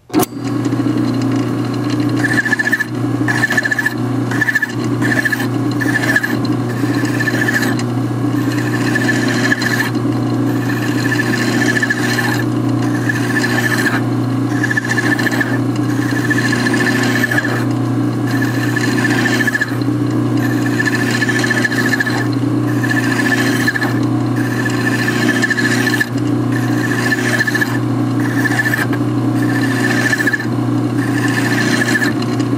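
Small benchtop metal lathe starting up and running steadily, spinning a steel ball stud in its chuck. A flat file is stroked against the turning ball, and each stroke brings a high squeal, repeating about once a second from about two seconds in.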